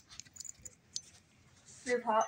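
Faint, scattered light clicks and clacks of wooden beads on a wire bead-maze toy being handled, mostly in the first second.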